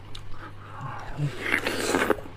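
Biting into a slice of juicy watermelon: a few soft wet clicks, then a wet sucking and slurping of the flesh that builds toward the end.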